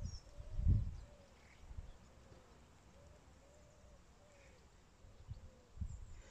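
A dove cooing faintly and repeatedly, a run of soft arched coos, with a brief high bird chirp or two. A low thump on the microphone comes about a second in, and fainter ones near the end.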